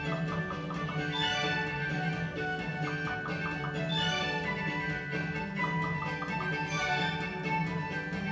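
Blueprint Gaming 'Wish Upon a Leprechaun' fruit machine playing its free-spins music from the cabinet speakers. Clusters of short, quick chime notes recur about every two to three seconds as the reels spin, stop and pay out.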